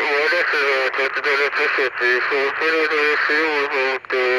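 Speech: a high-pitched voice talking continuously.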